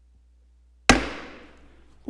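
A single sharp gavel strike on wood about a second in, ringing out and dying away over about a second: the chairman calling the hearing to order.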